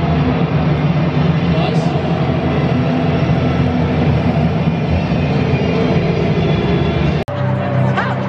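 Busy hubbub of a football stadium crowd with a steady low rumble, and music over the public address.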